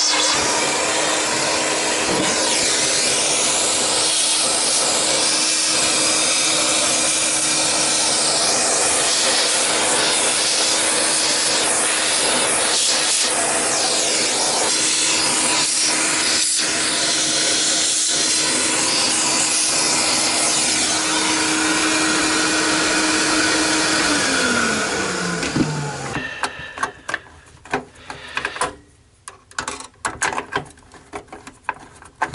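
A vacuum cleaner with a narrow crevice tool runs steadily with a constant hum and rush of air, sucking dust out of the inside of a desktop computer case. About 24 seconds in it is switched off and its motor winds down, falling in pitch. Then come scattered small clicks and knocks from hands working inside the case.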